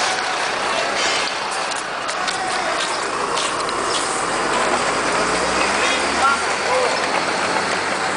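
Street ambience: indistinct voices over a steady wash of outdoor noise, with a low vehicle engine hum that swells a little past the middle and then fades.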